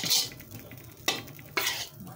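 A metal spoon scraping and tossing chicken and vegetables in a hot wok as they stir-fry with a sizzle. There are three strokes: at the start, about a second in, and near the end.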